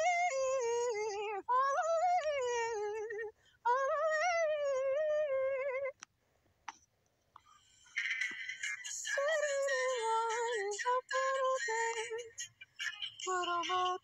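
A woman's voice singing three long, sliding warm-up phrases with short breaks between them. After a pause with a couple of faint clicks, singing over a music track with shorter notes starts about eight seconds in.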